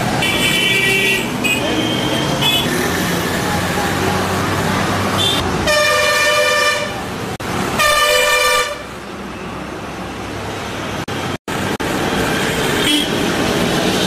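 Street traffic with vehicle horns: a short high toot near the start, then two longer horn blasts about six and eight seconds in, over the steady noise of passing vehicles. The sound drops out for an instant past eleven seconds.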